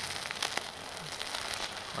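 Homemade magnesium pencil flare burning with an uneven crackling hiss and a few sharp pops. It burns slowly and irregularly, which the maker puts down to composition that might have been a little damp.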